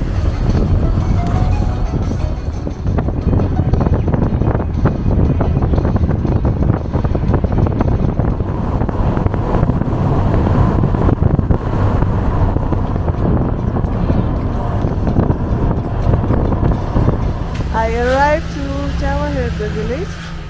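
Road and wind noise from inside a moving taxi: a steady low rumble with many small knocks and rattles from a rough road. Near the end it gives way to a melody with sliding pitch over a steady low drone.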